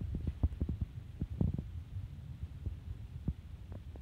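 Irregular low thumps and rumble of handling noise on a handheld phone's microphone as the phone is carried and swung around.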